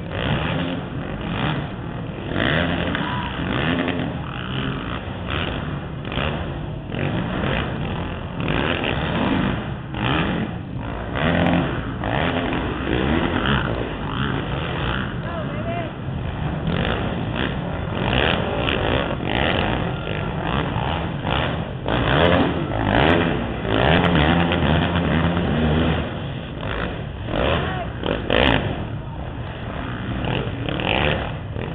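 Racing quads' engines running and revving around a dirt arenacross track, the pitch rising and falling as they accelerate and back off, mixed with indistinct voices.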